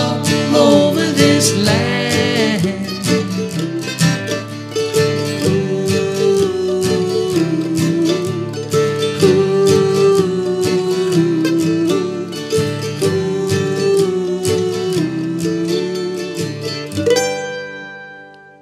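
Acoustic guitar strumming and a mandolin picking the melody in the instrumental close of a folk song, with the singing trailing off in the first two seconds. A final chord is struck about a second before the end and rings out, fading.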